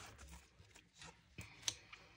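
Quiet handling of an open hardback book, with two soft taps about a second and a half in as hands open it and press its pages flat.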